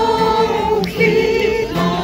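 A group of people singing a Polish patriotic song together, holding a long note and then a shorter one.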